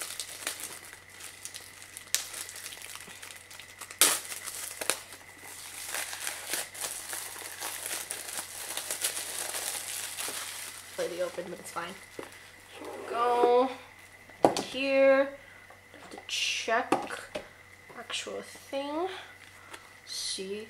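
Clear plastic shrink wrap crinkling and crackling as it is peeled off a boxed CD album, with a few sharp snaps early on. It dies away about halfway through.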